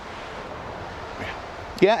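Steady hiss of wind, with a man saying "yeah" near the end.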